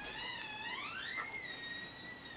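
A high whistling tone with overtones. It wavers and rises in pitch over about a second, then holds steady.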